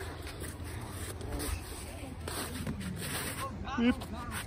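Steady low wind rumble on the microphone with faint scraping and rustling, and a short voice call near the end.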